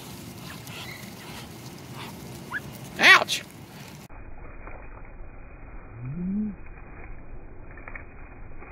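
A flock of Muscovy ducks feeding on Cheerios in the grass, with a short, loud, rising squeal about three seconds in and a brief low rising call about six seconds in.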